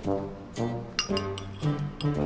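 Background music with a note about every half second. A metal spoon clinks against a glass mixing bowl about a second in.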